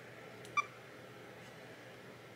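A single short electronic beep from a Canon camera as its controls are worked, about half a second in, with a faint click just before it; otherwise a low steady hiss.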